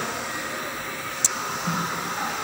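Steady running noise of the car's engine heard from underneath the vehicle, with one sharp click about a second in.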